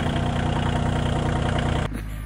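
Small tractor's engine idling steadily with a rapid even firing pulse, cutting in and out abruptly.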